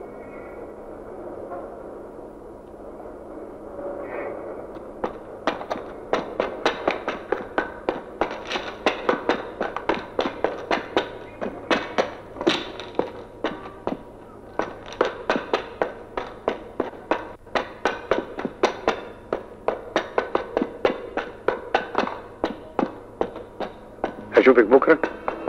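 Hard-soled shoes climbing stone stairs: a long, even run of sharp footsteps, about three a second, starting about five seconds in after a steadier murmur, with music faintly underneath.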